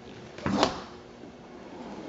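Door latch of a 1955 Messerschmitt KR200 releasing with one sharp metallic click, about half a second in, as the chrome handle is worked and the door is swung open.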